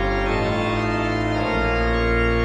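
Digital organ playing sustained full chords over held deep pedal bass notes, with the bass changing about one and a half seconds in.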